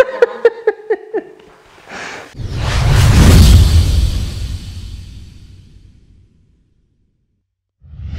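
A man laughing in quick short bursts for about a second. About two seconds in, a loud whoosh sound effect with a deep rumble swells and slowly fades away.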